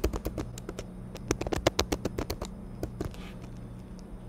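Computer keyboard being typed on: a quick run of key clicks for the first two and a half seconds, then a few scattered keystrokes about three seconds in.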